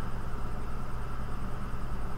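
Steady low hum with an even hiss: background room noise.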